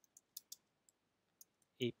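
Faint computer keyboard keystrokes: about five short, unevenly spaced clicks as a few letters are typed into a browser address bar.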